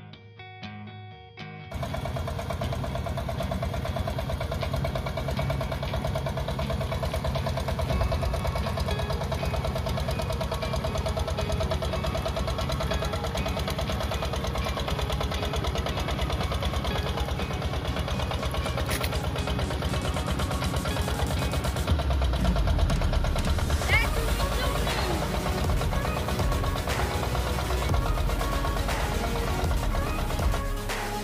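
A small wooden fishing boat's inboard engine running steadily with a fast, even beat, cutting in loudly about two seconds in after brief guitar music. About two-thirds of the way through it gets louder and deeper as the boat passes close.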